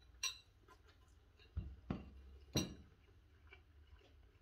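A metal fork clinking against a bowl, once about a quarter second in and again about two and a half seconds in, with a couple of duller knocks in between.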